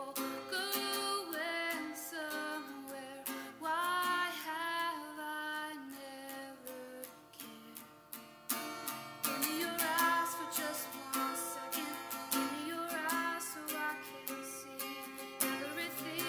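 A song: a voice singing a melody over plucked acoustic guitar.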